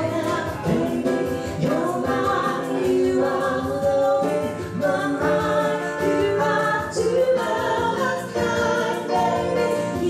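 A woman sings a slow ballad into a handheld microphone, accompanied by chords on a digital piano. A small hand shaker keeps a soft, even beat.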